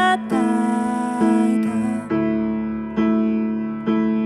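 Slow piano ballad: a woman sings over upright piano accompaniment, her voice dropping out about halfway while the piano carries on with held chords, restruck twice.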